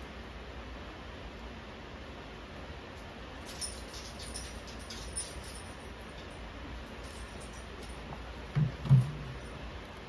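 Handling of a potted plant and a plastic bottle: faint light clicks and crinkles a few seconds in, then two dull thumps close together near the end as the pot is handled.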